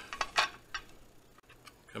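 Light clicks and ticks of hookup wires and a small black plastic project box being handled by hand, a few quick ones in the first second, the loudest about half a second in.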